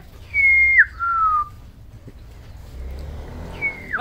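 Amazon parrot whistling: a clear high note that drops to a lower, slowly falling note, then near the end a shorter whistle sliding down.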